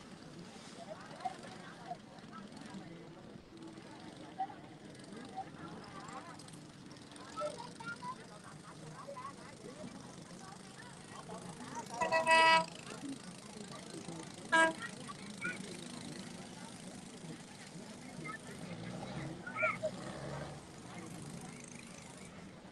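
A boat horn toots twice, a half-second blast about midway and a brief one two seconds later, over the steady drone of a small boat engine.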